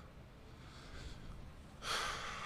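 Quiet room tone at a table microphone, then near the end a man's sudden intake of breath close to the mic, just before he speaks.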